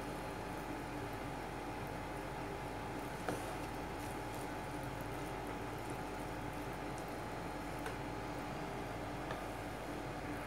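Wooden spatula stirring cooked rice in a nonstick pan: soft scraping and squishing over a steady faint hiss, with a couple of light taps.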